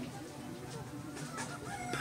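Faint bird calls in the background, with no other sound standing out.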